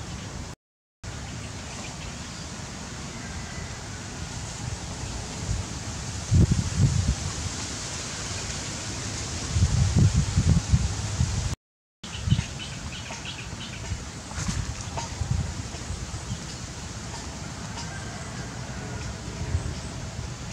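Outdoor ambience with wind buffeting the microphone in gusts, loudest about six and ten seconds in, and faint bird chirps. The sound cuts out completely twice, briefly.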